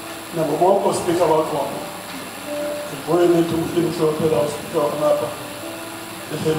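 A person's voice, in phrases broken by short pauses.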